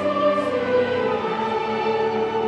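Opera chorus singing held, sustained notes together with a full orchestra.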